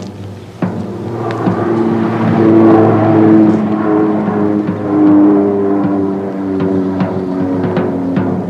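Instrumental passage of late-1960s Hungarian beat-band rock: a few drum hits, then held chords that swell from about a second in and move through several notes, with more drum hits near the end.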